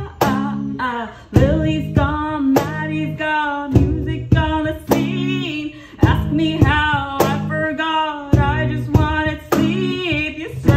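A woman singing a melody over a strummed acoustic guitar, with a hand-played cajon keeping a steady beat.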